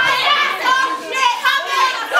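A group of young men and women shouting together as a rowdy crowd, many voices overlapping without a break.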